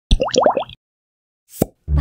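Cartoon sound effects for an animated logo intro: four quick rising blips in the first half-second, then a single short pop about a second and a half in.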